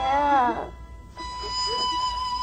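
A child's tearful, wavering cry in the first half second, then a single long held flute note of the drama's background score.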